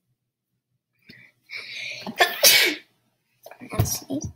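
A boy sneezes once: a drawn-in breath builds for about half a second, then a loud sneeze bursts out about two and a half seconds in.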